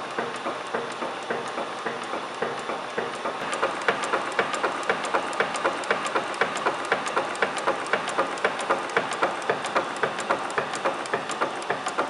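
V&O Super 25-ton punch press running, with a steady, rapid, regular clatter of about three knocks a second. The clatter grows louder and sharper a few seconds in.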